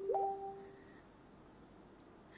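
A woman's brief hummed vocal sound, about half a second long with a slight upward slide in pitch, followed by faint room tone.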